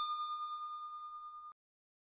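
Notification-bell 'ding' sound effect, ringing on from a strike just before and fading away. It cuts off abruptly about a second and a half in.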